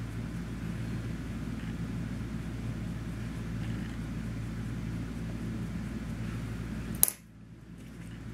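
A steady low hum with a faint buzz, ending abruptly with a single click about seven seconds in, after which the sound drops much quieter.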